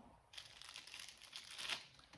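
Clear plastic packaging crinkling in a quick run of light crackles as the pen inside it is handled, starting about a third of a second in.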